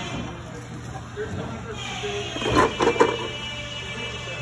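A quick clatter of several sharp knocks about two and a half seconds in, as a metal window-frame extrusion and parts are handled on the assembly bench, over a steady factory hum and background music.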